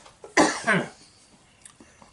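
A man coughing twice in quick succession into his fist.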